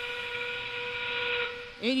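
Train-whistle sound effect over the competition field's sound system: one long, steady, breathy whistle that cuts off near the end. It signals the start of the match's final 30 seconds, the endgame.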